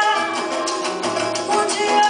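A live samba performance: a woman singing into a microphone over a band with conga drums.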